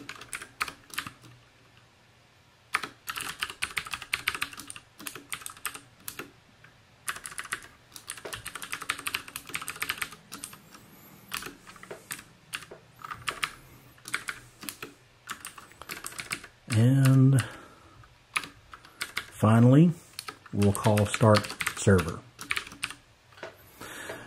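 Typing on a computer keyboard: quick, uneven runs of keystrokes with short pauses between them.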